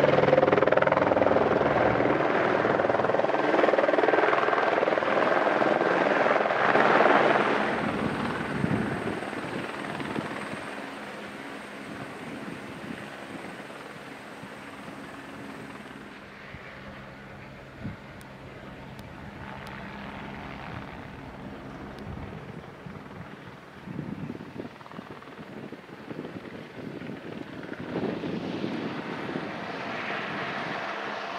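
A droning engine, loud for the first seven or eight seconds, then fading away to a faint drone that lingers.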